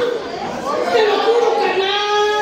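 Speech only: a woman talking loudly into a microphone, drawing out one syllable in the second half.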